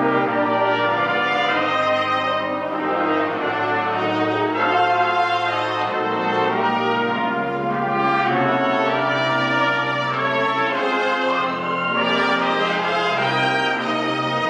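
Live pit orchestra playing a slow instrumental passage, with brass carrying long sustained notes over held bass notes.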